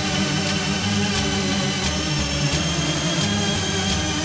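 Extratone electronic music: distorted kick drums at over 1000 BPM, so fast that they blur into one continuous, harsh, engine-like buzz at a steady loudness, with a few thin high tones held above it.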